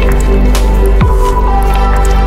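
Chill electronic lounge music: sustained synth chords over a steady deep bass, with a low bass note that drops sharply in pitch about a second in.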